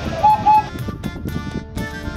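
Background music of steady held chords, with two short high notes in quick succession near the start as its loudest part.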